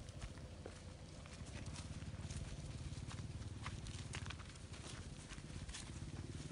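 Faint footsteps on a dirt and grass path: irregular soft clicks over a low rumble.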